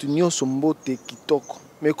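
A man speaking in short phrases with brief pauses.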